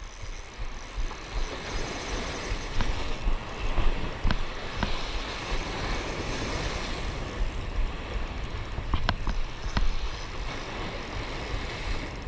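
Wind on the microphone over waves washing against shore rocks, with a spinning reel being cranked during a fight with a hooked fish and a few sharp clicks.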